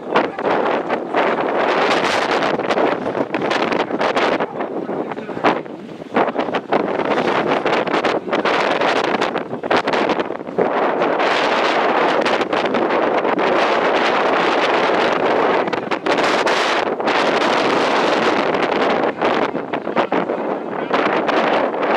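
Wind buffeting the microphone: a loud, gusting noise that rises and falls, with a few brief lulls.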